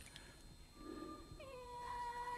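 A quiet stretch, then a faint held note from the trailer's score comes in about one and a half seconds in. It dips slightly in pitch as it starts and then holds steady on one pitch.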